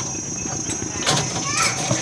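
Steel rebar cage being tied with wire: a few short metallic clicks and taps from the bars, over background voices.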